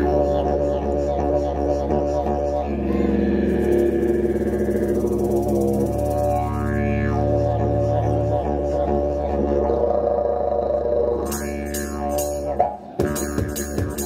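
Didgeridoo playing a continuous low drone with overtones sweeping up and down, over strummed acoustic guitar chords. Near the end the drone drops out briefly and a steady beat of drum hits comes in.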